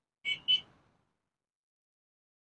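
Two short, high-pitched vehicle horn beeps in quick succession, the second louder.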